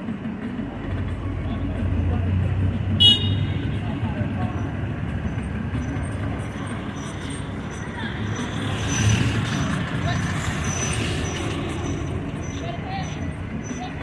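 Street traffic: vehicles passing with engine and tyre noise, and one short car horn toot about three seconds in.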